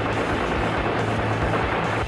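A steady rushing roar of a jet aircraft, over background music with low held notes.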